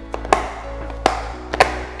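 Clip-lock lid of a plastic food storage container being snapped shut: three sharp clicks spread over about a second and a half, under background music.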